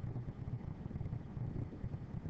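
Low, unsteady rumbling background noise between spoken phrases, with no distinct event in it.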